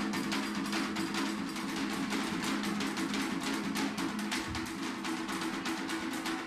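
Drum and percussion music with a fast, even run of sharp strokes over sustained low tones, going on steadily throughout.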